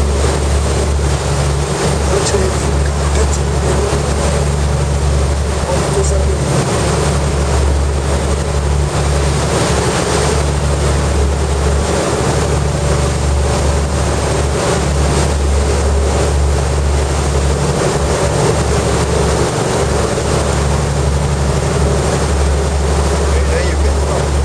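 Motorboat engine running at a steady cruising drone, with the rush of its wake water along the hull.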